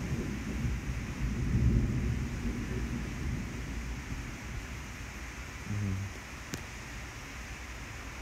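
Low muffled rumble on the microphone for about the first three seconds, then a brief low hum of a voice near the six-second mark and a single sharp click just after.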